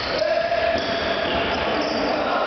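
Indoor futsal play in a reverberant sports hall: the ball being kicked and bouncing on the hall floor, with sustained steady tones running underneath throughout.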